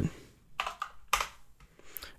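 A few separate keystrokes on a computer keyboard, typing in a number value.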